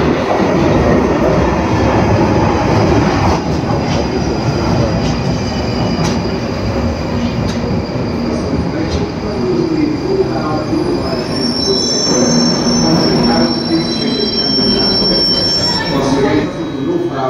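London Underground tube train running into the platform and braking to a stop: a loud, steady rumble of wheels on the rails, joined in the last few seconds by a high, steady squeal as it slows.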